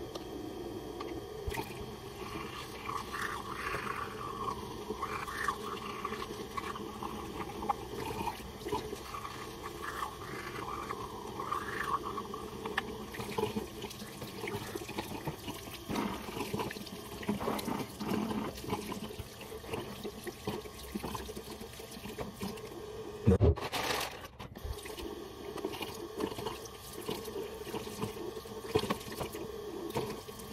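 Water running from a bathroom tap into the sink, with splashing as someone washes at it. One sharp knock comes a little after two-thirds of the way through.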